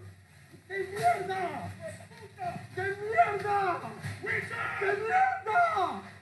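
Speech: people talking, likely the voices in the off-road clip. No engine or crash sound stands out.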